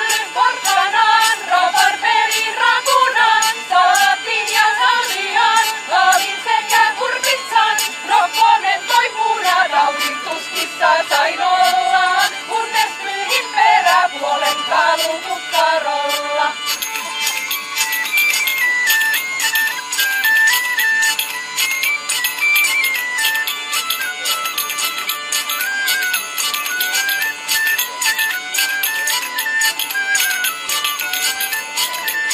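Medieval folk band: women singing a song in unison over a steady beat of side drum and tambourine, with the drone of a hurdy-gurdy. About halfway through the singing stops and two small pipes play a high instrumental melody over the tambourine's jingles and the drone.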